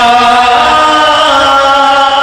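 A man chanting a naat, a devotional poem in praise of the Prophet, in one long held melodic line.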